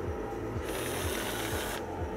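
Small geared electric motor of an Arduino autopilot test rig running for about a second, turning the belt and pulley of the rudder-angle sensor as the autopilot steers to correct its course.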